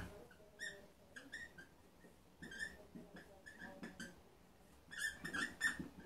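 Marker squeaking on a whiteboard in a series of short strokes as letters are written. The squeaks come in quick clusters with brief gaps between them.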